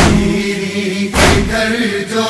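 Male voices chanting a noha lament in chorus over a heavy slap-like beat that falls about every 1.2 seconds, twice here. The beat is the matam, chest-beating, that keeps time in noha recitation.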